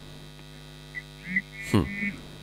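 Steady electrical mains hum on a phone-in line during a pause in speech, with a short murmured 'mm' from the caller near the end.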